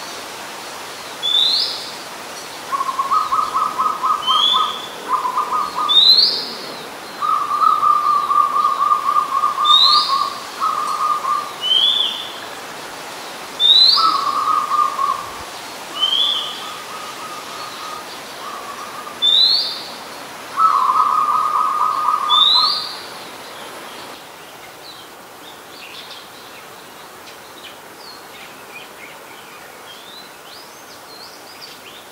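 Oriental magpie robin singing: a clear rising whistled note repeated about every two seconds, with a lower, fast-pulsed trill coming in bursts of one to three seconds between them. Both stop about 24 seconds in, leaving only faint background sound.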